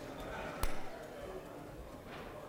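A single sharp knock about half a second in, over the low background noise of a large room.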